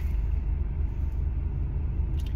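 Low, steady rumble of a car heard from inside the cabin.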